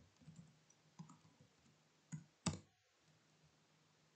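Faint computer keyboard keystrokes: a few soft key clicks, then two sharper strikes about two seconds in, the second the loudest.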